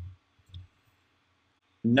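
A few soft computer keyboard keystrokes in the first half second, then near silence until a man's voice starts near the end.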